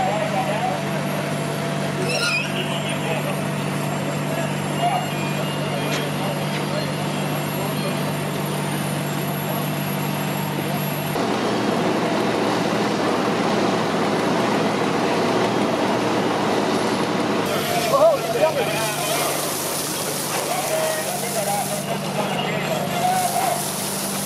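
Steady low drone of a fire engine's motor and pump running at a fire scene, with voices in the background. The drone drops out about eleven seconds in and returns near the end.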